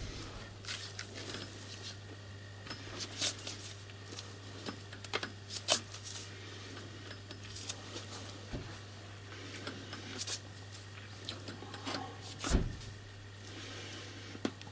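Lathe chuck turned by hand: scattered light clicks and knocks over a steady low hum, the sharpest knocks about three, five and a half, ten and twelve and a half seconds in.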